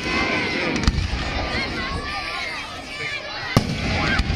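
Fireworks display: aerial shells bursting with sharp bangs, one about a second in and a louder one near the end, with low rumbling between them.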